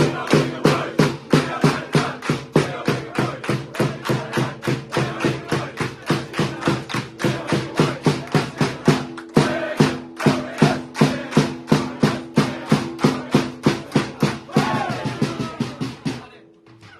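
A hand-held drum beaten with a stick in a steady beat of about three strikes a second, with a group of men clapping along and chanting a held note. Near the end the beat stops and the group cheers.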